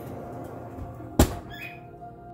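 An oven door shutting with a single loud thump a little past the middle, over soft background music.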